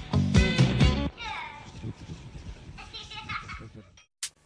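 Background music with a strong beat that cuts off about a second in, followed by quieter voices.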